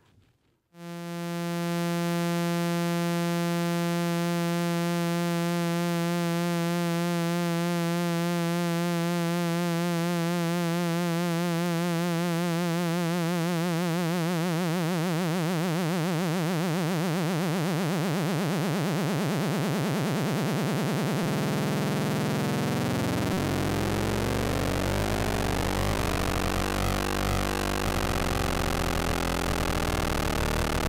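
Moog System 55 analog oscillator tone, frequency-modulated by a second voltage-controlled oscillator. It comes in about a second in as a steady pitched tone. As the modulation is turned up it smears into a dense, clangorous, noisy sound, and after about twenty seconds it turns rough and chaotic down into the bass.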